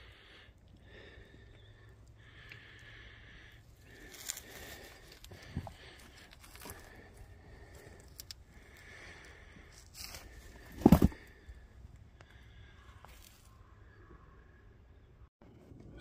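Faint handling noise of a gloved hand rubbing and shifting a large chunk of quartz and sulphide ore against the rocks beneath it: quiet scrapes and small clicks, with one loud short knock about two-thirds of the way through.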